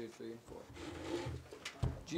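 Faint, unclear talk in a small room while hymnbook pages are turned, with a short knock near the end.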